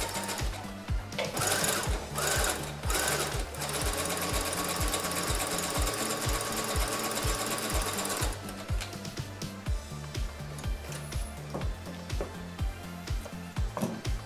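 Computerised domestic sewing machine running a zigzag stitch for about eight seconds, then stopping, followed by a few light clicks. Background music plays throughout.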